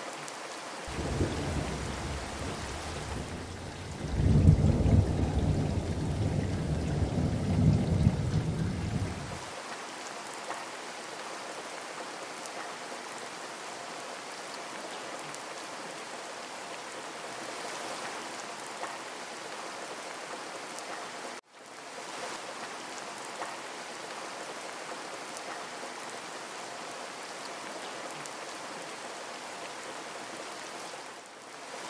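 Steady rain hiss, with a low rumble of thunder starting about a second in, swelling from about four seconds and dying away just before ten seconds. The sound cuts out for an instant about two-thirds of the way through.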